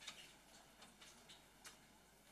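Near silence with faint, irregular ticks and clicks, a few a second.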